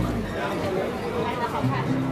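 Chatter of people's voices, unclear words from passers-by talking on a busy street.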